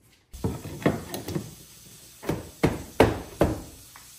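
A series of about eight sharp wooden knocks, unevenly spaced and loudest about three seconds in, as oak flooring boards are handled and fitted on the floor.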